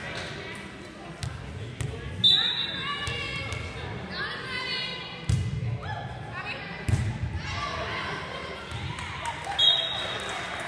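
A volleyball being struck several times in a gym hall, sharp smacks about two, five and seven seconds in, with players and spectators calling out between the hits. A short, high referee's whistle sounds near the end.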